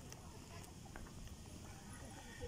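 Faint outdoor ambience: a low, unsteady rumble with a few scattered light clicks and faint distant voices.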